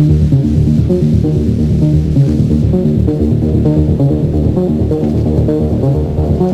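Italodance music from a radio DJ mix recorded on cassette, playing steadily with a busy, quickly changing bass line.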